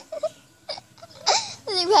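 Young girls giggling and squealing in a few short, high-pitched bursts.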